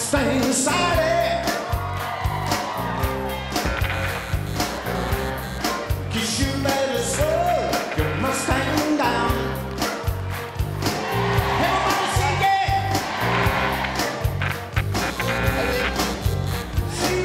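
Rock song with a steady drum beat and bass line, with a man's voice singing over it.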